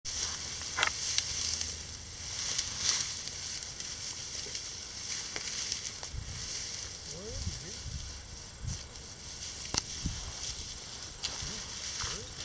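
Tall dry grass rustling and swishing under walking footsteps, in swells every second or two, with a few sharp ticks and faint distant voices.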